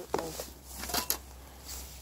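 A few short rustles and clicks of small-mammal trap gear being handled among long grass, over a faint steady low rumble.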